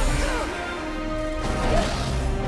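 Film soundtrack: orchestral score mixed with the electric crackle sound effect of Force lightning striking lightsaber blades.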